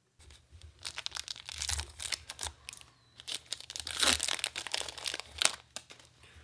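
A Magic: The Gathering draft booster pack's foil wrapper being torn open and crinkled: a run of irregular crackles and rips, loudest around two seconds in and again around four to five seconds in.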